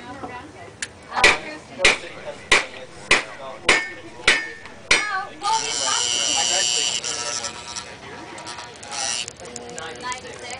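A run of about seven sharp metallic knocks, close to two a second. They are followed a little past halfway by a steady hiss lasting a couple of seconds as bar solder is melted into the hot, fluxed copper seam.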